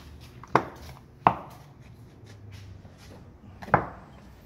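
A hand tool picking dried bedding putty off the glass at the corner of a wooden window sash. It gives three sharp clicks: about half a second in, just over a second in, and near the end.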